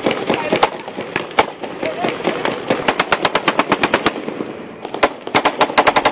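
Automatic gunfire from soldiers' rifles: a few single shots, then a rapid burst about three seconds in lasting about a second, and another rapid burst from about five seconds in.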